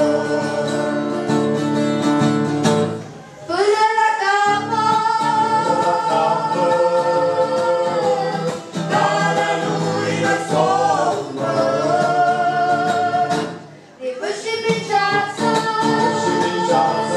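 A family vocal group singing a Romanian Christian song, several voices together over sustained accompaniment. The singing breaks briefly between phrases about three seconds in and again near the end.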